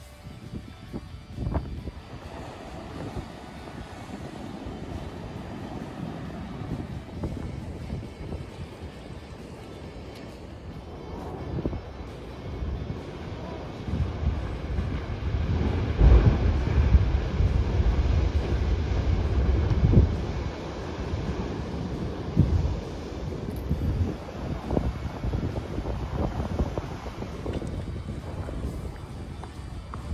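Wind buffeting the microphone over the wash of ocean surf, gusting hardest in the middle of the stretch.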